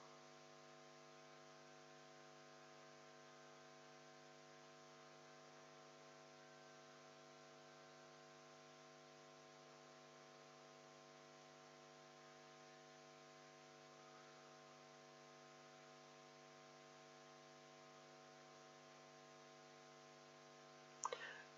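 Near silence: a faint, steady electrical mains hum with a light hiss underneath.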